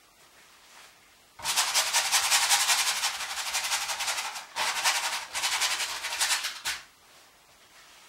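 Paintbrush scrubbing oil paint onto canvas in rapid back-and-forth strokes, a scratchy rubbing in two runs: from about a second and a half in to about four and a half, then again to near seven seconds.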